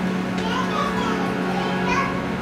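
Harmonium holding a steady drone note, with children's voices heard faintly in the room for a moment about half a second in.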